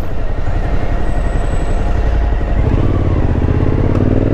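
Suzuki V-Strom motorcycle engine running as it is ridden through town traffic, with its pitch rising over the last second or so as it accelerates out of a turn.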